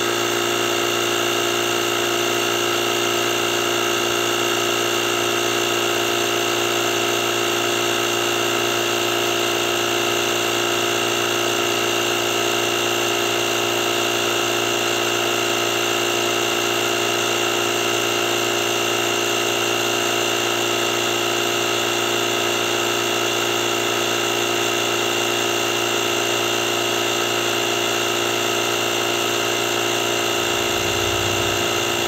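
Parkside PKA 20-LI A1 cordless 20 V compressor running steadily under load as it pumps up a car tyre, an even mechanical hum with a steady high tone over it. The tyre pressure is climbing from about 1.5 bar toward the 2.5 bar shut-off.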